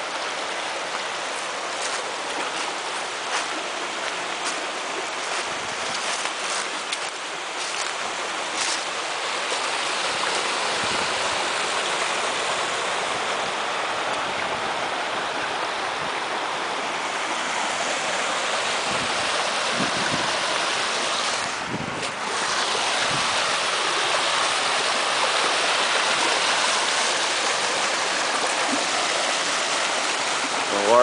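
Small woodland brook running shallow over stones and riffles, a steady rush of water that grows a little louder after the first few seconds.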